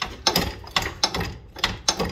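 Irregular metallic clicks and clunks, about eight in two seconds, from a golf car's front suspension being worked by hand: the upper control arm knocks loosely in its failed rubber bushing.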